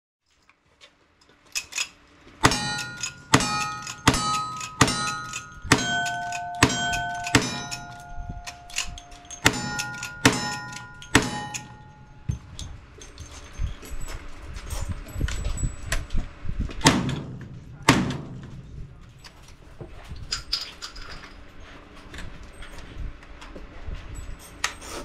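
Gunshots in a quick string, about three every two seconds, each hit answered by the ringing of a steel target, the rings at several different pitches. After a pause come two more shots about a second apart, with some handling clatter around them.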